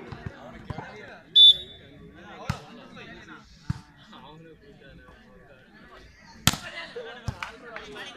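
Volleyball being struck during a rally: several sharp smacks of hand on ball, the loudest about six and a half seconds in. A short shrill whistle blast comes about a second and a half in, and players' and onlookers' voices carry in the background.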